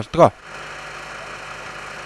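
A vehicle engine idling: a steady, even hum and hiss.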